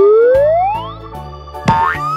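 Cartoon sound effect: a whistle-like swoop rising steadily in pitch for about a second, over children's background music, then a short sharp hit near the end.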